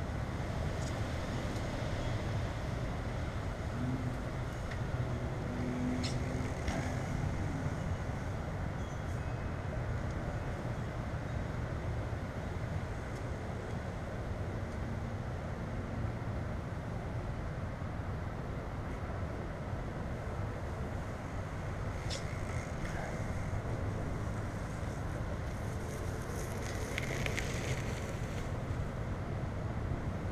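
Steady low rumbling outdoor background noise, with a few faint clicks.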